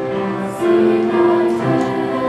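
A mixed high school choir singing held chords, moving to new notes about half a second in and again near the end, louder after the first change.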